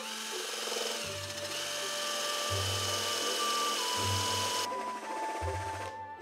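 A cordless drill with a Forstner bit boring into a wooden board: a steady motor whine mixed with the rasp of the cutting bit, which cuts off about five seconds in. Background music plays throughout.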